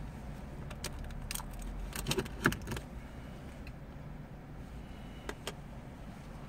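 A quick run of light clicks and jingling rattles, like small hard objects being handled, over a low steady rumble. The loudest click comes about two and a half seconds in, and two more single clicks follow near the end.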